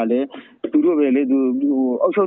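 Speech only: a man narrating a news report in Burmese, with a brief pause about a third of a second in.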